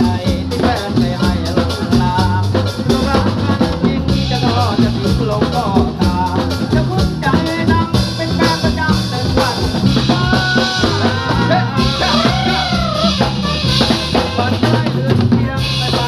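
Live Thai ramwong dance band playing, with a drum kit and congas keeping a steady dance beat under a moving bass line and melody.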